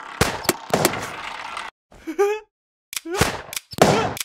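Cartoon gunshot sound effects: several sharp shots in quick succession, followed by a short hiss. A brief vocal exclamation comes about halfway, then another run of shots near the end.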